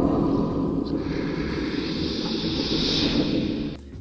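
A steady rushing noise that starts suddenly, grows a hiss in the upper range through the middle, and cuts off suddenly near the end.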